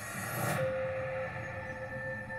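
Film trailer sound design: a rising noisy swell that peaks about half a second in, then one long held tone over a low rumble.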